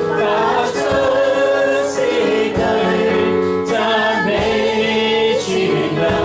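A worship song sung over sustained electronic-keyboard chords, the voice gliding up and down through the melody over the held harmony.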